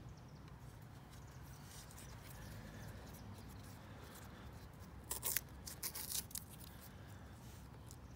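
Masking tape being peeled off a painted plastic prop, faint, with a few short crackling rips about five to six and a half seconds in. The tape's adhesive has bonded to the fresh gloss coat.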